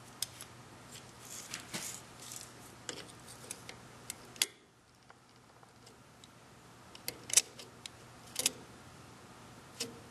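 Scattered light metallic clicks and taps of a caliper being handled and set against the workpiece in the stopped lathe's chuck, over a faint steady hum.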